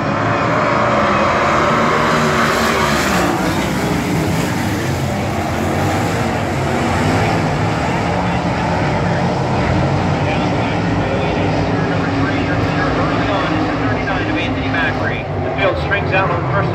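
A field of 410 sprint cars, with 410-cubic-inch V8 engines, racing at full throttle on a dirt oval just after the green flag. The dense, loud engine noise of the pack swells in the first few seconds.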